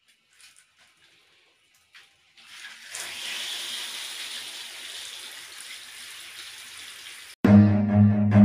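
Water running from a tap in a tiled bathroom, turned on about two and a half seconds in and then running steadily, after a few faint clicks. Near the end it cuts off suddenly to louder music with low bowed strings.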